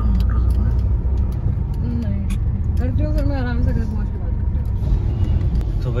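Low steady rumble of a car's engine and tyres heard from inside the cabin while driving, with a faint voice in the middle.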